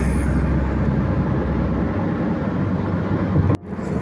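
Steady road and tyre noise of a car driving at highway speed, heard from inside the cabin. The sound drops out sharply for a moment near the end.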